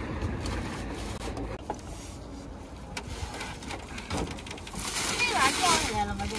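Things being shifted and handled inside the back of a small camper van, with a few light knocks over a low steady rumble; a woman starts talking near the end.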